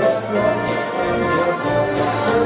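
Live dance band playing a steady dance tune on accordion, guitar and drums, with regular cymbal strokes over the beat.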